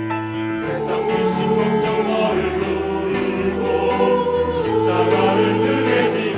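Mixed church choir of men's and women's voices singing a Korean hymn in full harmony.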